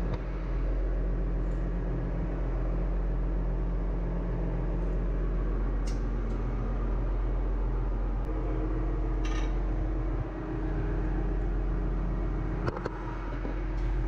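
Steady engine-room machinery hum, heard from inside a ship main engine's scavenge air receiver, with several held low tones. A higher tone joins about eight seconds in, and there are a few faint knocks.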